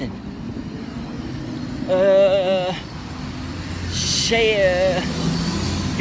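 Road traffic: vehicles running with a steady low rumble. A man's voice speaks twice in short snatches over it.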